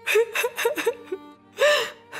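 A woman sobbing, with a quick run of short gasping sobs and then one longer sob near the end, over background music.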